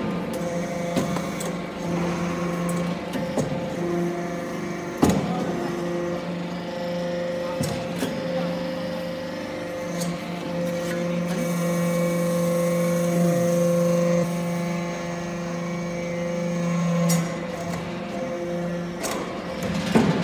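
Hydraulic metal-chip briquetting press and its feed conveyor running with a steady hum, broken by a few sharp metallic clanks.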